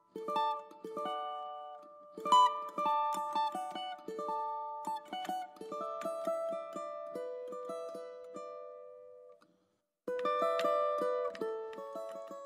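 A plucked string instrument plays a melody of single notes, each ringing out and dying away. The playing stops for a moment shortly before the end, then starts again.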